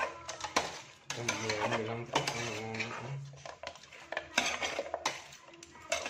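A metal ladle stirring chicken feet in a stainless steel pot, clinking and scraping against the pot's side several times.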